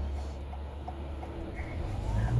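Steady low rumble of road and wind noise inside the cabin of a 2021 Toyota Sienna hybrid minivan at highway speed, with wind noise from a box fitted on the window.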